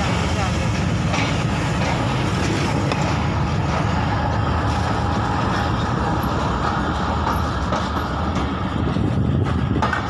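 Steady rumble of a passenger train coach running over the tracks, heard from inside the coach by an open window, with passenger voices underneath.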